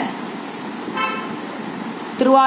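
A brief vehicle horn toot about a second in, over a steady background hiss.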